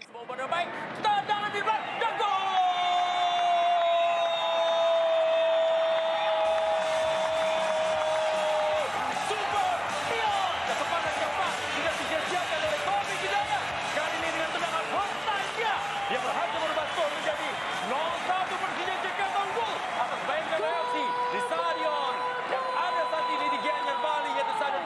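A football TV commentator's excited goal call: a long held shout that slides slightly down in pitch from about two seconds in to about nine, then fast excited commentary, and another long held shout near the end.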